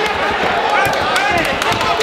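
Spectators and cornermen shouting during an MMA bout, over sharp slaps and dull thuds from strikes and footwork on the cage canvas.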